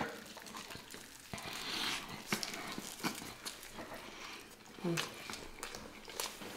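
Close-miked chewing of sandwiches: many small wet clicks and crunches of bread in the mouth, a soft rustle about one and a half seconds in, and a brief hummed "mm" about five seconds in.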